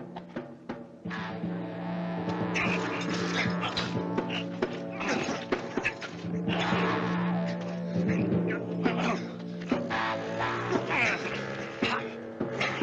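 Western film-score music with long held notes, laid over a fistfight. Many sharp blows and scuffling impacts come through it.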